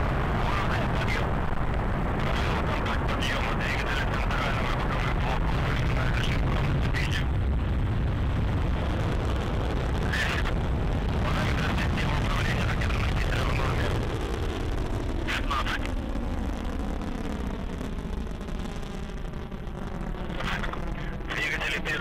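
Soyuz-2.1a rocket's first-stage RD-107A and RD-108A engines running at full thrust through lift-off and climb: a loud, steady rumble that eases somewhat after about 14 seconds and takes on a sweeping, wavering tone as the rocket moves away.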